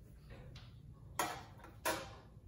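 Ratchet wrench clicking twice, a little over half a second apart, as it is swung back while backing out a loosened spark plug.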